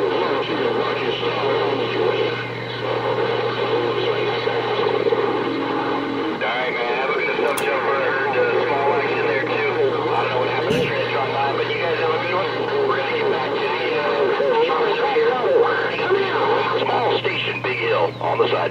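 Galaxy CB radio receiving a strong but garbled incoming signal: unintelligible voices through the speaker over a steady low hum. There are two brief clicks about a third and halfway through.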